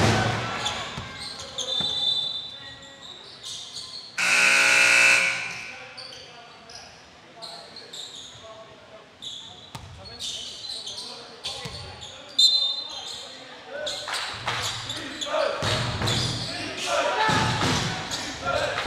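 Basketball game in a gym hall: a ball bouncing on the hardwood court, brief sneaker squeaks and players' voices. A buzzing horn sounds once for about a second, about four seconds in.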